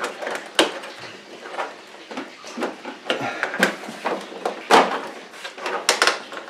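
Plastic control-panel bezel of a Xerox Phaser 8500 printer being worked loose by hand: irregular small clicks and taps of plastic with light rustling, the sharpest about half a second in and near the end.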